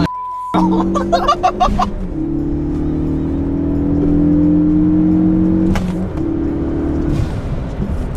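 Ford Focus engine pulling hard under acceleration, heard inside the cabin: its pitch climbs steadily through the gears, with gear changes about two seconds in and about six seconds in. It opens with a short bleep over a swear word.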